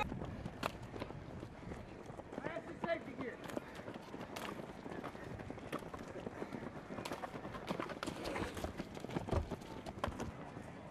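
Footsteps of several people running past, an irregular patter of shoes striking the road, with faint voices in the background.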